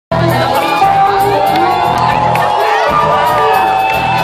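Rock band playing live through the PA, electric guitar and bass over drums, mixed with a crowd cheering and shouting close around the microphone.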